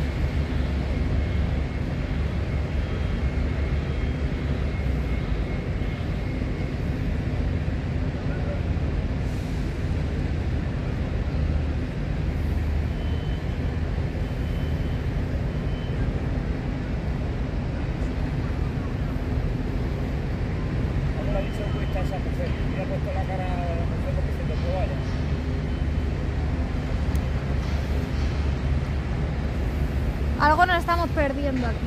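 Heavy diesel construction machinery running steadily with a constant low drone. Faint distant voices come in about two-thirds of the way through.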